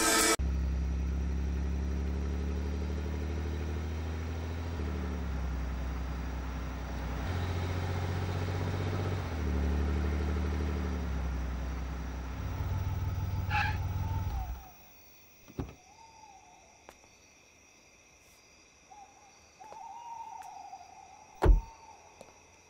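A deep, low droning soundtrack that shifts pitch in steps and cuts off suddenly about two-thirds of the way through. Then quiet night ambience with a steady faint high trill, a soft thump, a bird-like call heard twice, and one sharp knock near the end.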